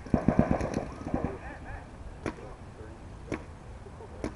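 Paintball markers firing a rapid string of shots, about ten a second, for the first second or so. Single shots follow about two and three seconds in, with distant shouting between them.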